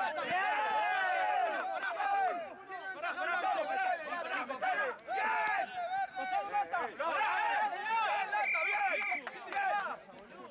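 Voices shouting and calling out on and beside a rugby pitch, several overlapping, with only brief pauses.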